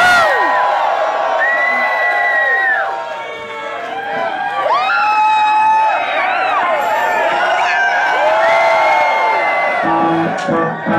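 Concert crowd cheering and whooping, with several long rising-and-falling "woo" calls over the din. The noise dips briefly about three and a half seconds in, then swells again.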